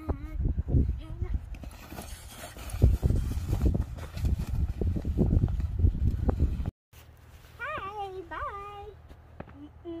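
Boots thudding and crunching in packed snow while climbing a snow pile, over a heavy low rumble. After a short break, a child's voice hums a few sliding 'mm' notes, with another short one near the end.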